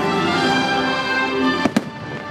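Fireworks show music playing steadily, with two sharp firework bangs in quick succession near the end.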